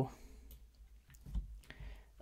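A few faint computer mouse clicks in a quiet room, the clearest about one and a half seconds in.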